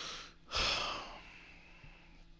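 A man sighing into a close studio microphone: a breath in, then a long exhale that starts about half a second in and fades away over about a second.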